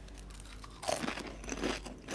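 Crispy seaweed teriyaki-flavoured snack chips being bitten and chewed. It is quiet for the first second, then comes a quick run of about half a dozen crisp crunches.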